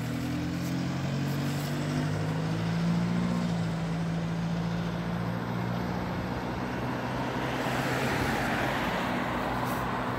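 ADL Enviro 200 single-deck bus's diesel engine droning as it pulls away and drives off, its engine note fading after about four seconds. Road noise from a passing car swells near the end.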